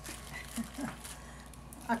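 A quiet room with a brief, faint murmur of a woman's voice and light handling noise. Clear speech begins right at the end.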